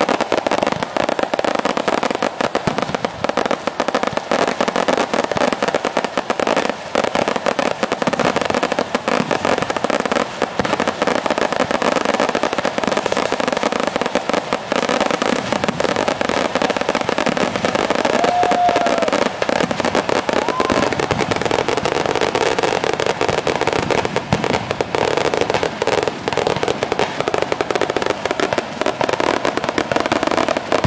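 A long string of firecrackers hung beneath a rising hot-air balloon going off in a dense, unbroken rattle of bangs.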